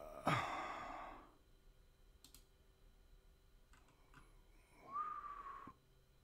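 A breathy exhale like a sigh, a few soft clicks in the middle, and near the end a brief whistle-like tone that slides slightly down and cuts off suddenly.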